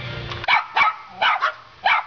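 A small dog barking sharply, about five barks in quick succession starting half a second in.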